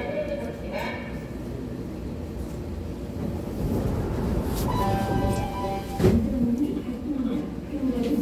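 Seoul Metro Line 3 subway train heard from inside the car as it pulls away from a station. A low running rumble builds as it accelerates, with steady tones about five seconds in and a single sharp knock about a second later.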